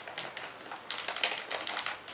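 Small plastic toys and a plastic candy bag being handled, giving irregular light clicks and crinkles that get busier about halfway through.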